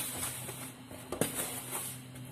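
Dry salt and seasoning mix being stirred in a plastic basin: a soft granular scraping, with a sharp tap against the basin about a second in.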